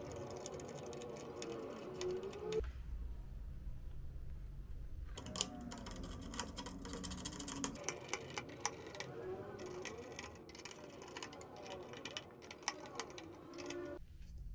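Faint, irregular metal clicks and ticks of a screwdriver turning the mounting nuts on a Deepcool Gammaxx 400 Pro CPU cooler's bracket, tightening each corner a little at a time. The clicking thins out for a couple of seconds near the start.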